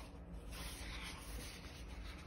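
Pages of a hardcover picture book being turned by hand: a soft, even rustle of paper sliding and rubbing.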